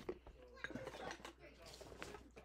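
Faint background voices with a few light clicks and knocks of small containers being handled.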